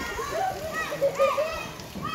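Children playing, several young voices chattering and calling out over one another, with a louder call a little past the middle.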